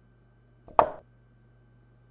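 Chess-move sound effect: a single short knock of a piece set down on the board, about three-quarters of a second in, as a bishop is moved.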